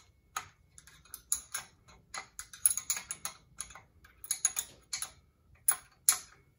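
A wrench backing off a steel nut on a bead roller's bearing-block bolt: a run of light, sharp metallic clicks in small irregular clusters.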